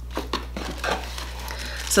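Clear plastic packaging bag crinkling as a small metal candle warmer is handled and unwrapped: a run of irregular crackles and rustles.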